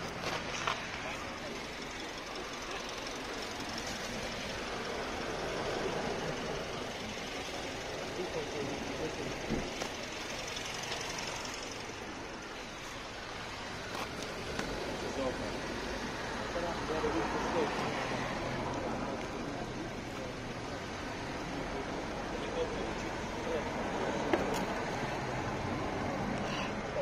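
Indistinct voices of people talking, over steady outdoor background noise.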